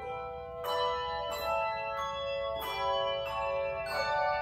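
Handbell choir ringing a piece on brass handbells: chords struck about five times, each left ringing so the tones overlap.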